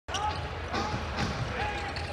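Basketball being dribbled on a hardwood arena court during a fast break, over a steady arena background of crowd murmur and faint voices.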